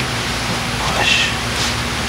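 Steady background hiss, with a faint hushed voice about a second in.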